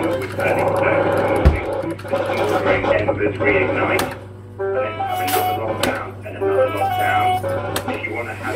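Fruit machine playing short stepped electronic tones and jingles as it spins and plays out, over a steady low hum. A single thump comes about one and a half seconds in.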